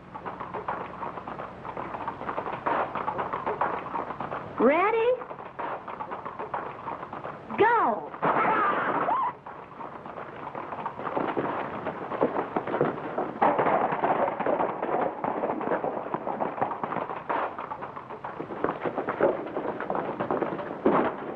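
A group of horses galloping off on a dirt street at the start of a race, a dense drumming of hoofbeats. Two loud rising yells come about five and eight seconds in, the second held for over a second.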